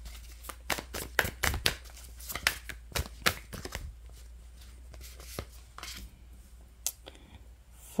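Tarot deck being shuffled by hand: a quick run of card clicks and slaps, dense for the first few seconds and then thinning to scattered clicks.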